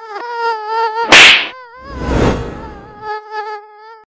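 Mosquito buzzing: a high, thin whine whose pitch wavers slightly as the insect flies. Two noisy bursts cut across it, a very loud sharp one about a second in and a softer one around two seconds in.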